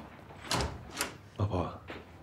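A door being opened and shut: three sharp clunks about half a second apart.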